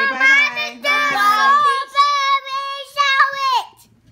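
Children's voices singing out in drawn-out, sing-song tones. A lower and a higher voice sound together at first, then the high voice holds one long note that stops shortly before the end.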